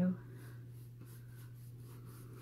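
Paintbrush working paint into a canvas: faint, quick, scratchy strokes repeating several times a second.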